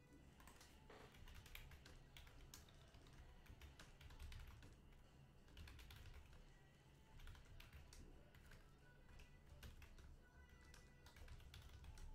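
Faint, irregular clicking of typing on a computer keyboard.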